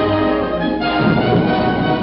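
Orchestral cartoon score playing, with strings and brass.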